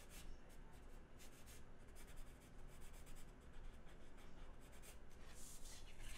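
Blue-line pencil scratching across drawing board paper in a run of short, faint sketching strokes, with a longer, louder stroke near the end.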